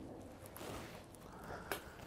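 Fork mashing the soft flesh of a baked potato inside its skin: faint soft scraping, with a light click near the end.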